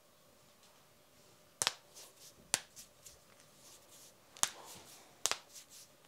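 Knuckles of interlaced fingers cracking: a series of sharp pops, the four loudest coming about a second apart, with fainter ones between.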